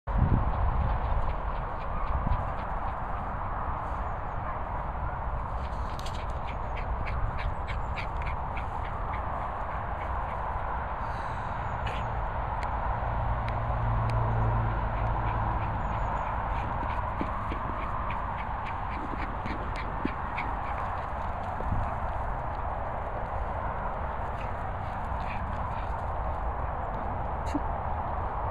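Steady background noise over a low, uneven rumble, with a run of faint, light ticks coming every fraction of a second through the middle.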